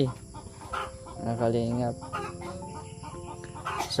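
Domestic chickens clucking, with a rooster crowing, quietly in the background.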